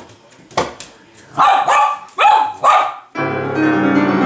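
A dog barks four short times in quick succession during a pause in digital piano playing, after a single sharp knock. The piano playing resumes about three seconds in.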